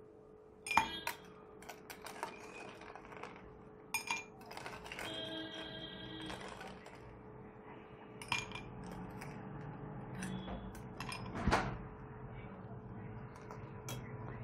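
A steel spoon scooping ice cubes from a steel bowl and dropping them into a drinking glass: scattered clinks of ice and spoon against metal and glass.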